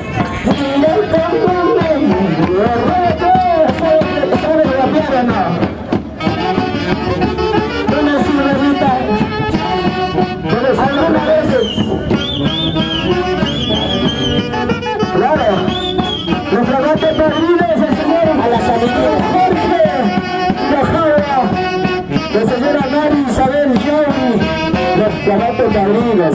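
Live Andean folk band music, a melody on saxophones or similar wind instruments over a drum, playing continuously, with crowd voices underneath.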